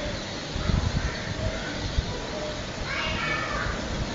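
Faint distant voices over a steady background noise, with a few low knocks about a second in and again at two seconds.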